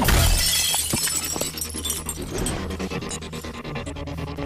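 A glass object smashes at the start, with a sharp crash and then shards tinkling and scattering for a second or two, over background music.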